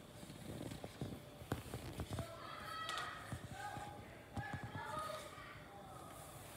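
A silicone spatula stirring a stiff, floury cake-donut dough in a plastic mixing bowl, knocking and scraping against the bowl in irregular taps. Faint voices in the background.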